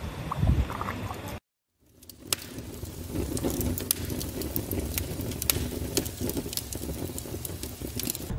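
For about the first second, wind and water sounds from the kayak. After a brief cut to silence, a wood fire burns in a wood-burning stove, crackling with scattered sharp pops over a low steady rumble.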